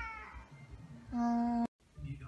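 A cat's meow trailing off, followed about a second later by a steady, flat tone lasting about half a second that cuts off abruptly.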